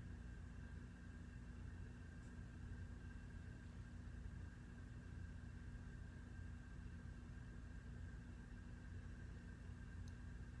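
Faint room tone: a steady low hum with a few faint steady tones and no distinct sounds.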